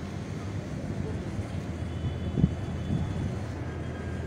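Steady low background rumble with no speech, with a couple of faint knocks about halfway through.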